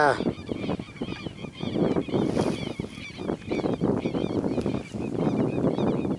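Birds calling over and over in short, harsh, wavering notes, with wind buffeting the microphone underneath.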